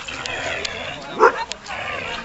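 A husky gives one short, loud bark about a second in, over voices in the background.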